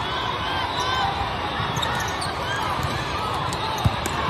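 Indoor volleyball play: athletic shoes squeaking in short chirps on the court over a steady background of voices in a large hall, with one sharp thump near the end.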